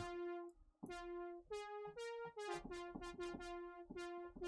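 Brassy sawtooth synth lead from Reason's Europa software synthesizer, its filter opened up, playing a short phrase: a few notes stepping upward, then several quick notes repeated at one pitch.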